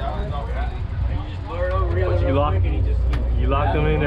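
Steady low drone of a sportfishing boat underway at sea, with men's voices talking over it and a single sharp click about three seconds in.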